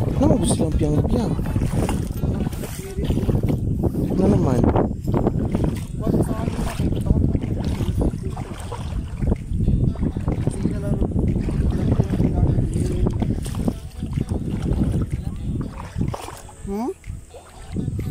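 Indistinct voices of people talking over a steady low rumbling noise on a phone microphone.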